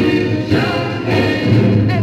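A Northern Soul vinyl single playing on a turntable: a soul song with several voices singing over a steady bass line.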